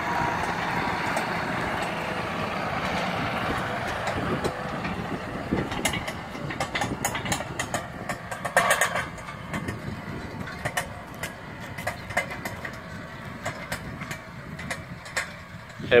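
John Deere farm tractor's diesel engine running as it drives close by pulling a row marker, then fading steadily as it moves away. Scattered sharp clicks and knocks come through in the second half.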